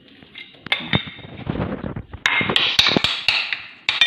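Metal spoon scraping raw minced meat off a plate into a glass bowl, with a run of sharp clinks and knocks as the spoon strikes the dishes, most of them in the second half.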